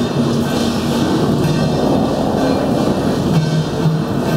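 Hard wheels of metal banner carts rolling over paving tiles close by, a continuous rattling rumble. Procession music with held low notes plays underneath.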